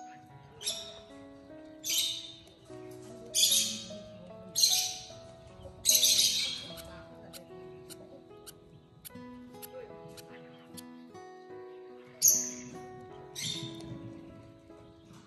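Short raspy squawks from lovebirds in a nest box as an adult feeds a newly hatched chick. There are five in the first seven seconds, then a pause, then two more near the end, over background music of plucked notes.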